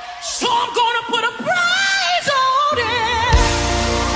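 Worship song: a solo singer ad-libs a long melismatic line with wide vibrato over sparse accompaniment. About three seconds in, the bass and full band come back in on a hit and hold a sustained chord.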